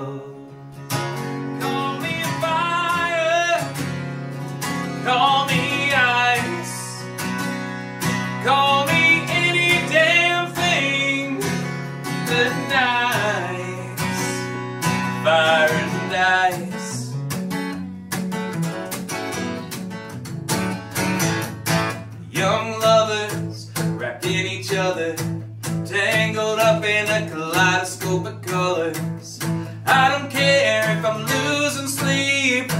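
A man singing over a strummed acoustic guitar. For about the first half the voice holds long, bending notes over the guitar; then the strumming comes forward in a steady rhythm, and the singing returns near the end.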